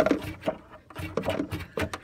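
Irregular light clicks, taps and scrapes on wooden boards, several a second, from a mouse and a plastic cup moving in a narrow wooden wall gap.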